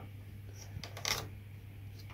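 Faint clicks of a plastic LEGO turntable being rotated by hand to reset a monorail track's direction mechanism, with two small sharp ticks near the middle.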